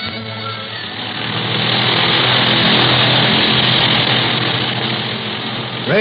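Radio-drama sound effect of an aircraft engine in flight: a steady droning hum with a noisy roar over it. It swells up about two seconds in as the tail of a musical bridge fades, then holds steady.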